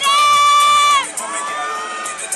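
A loud, high-pitched scream from the audience, held for about a second before falling away, then a second, quieter rising shriek, over crowd cheering.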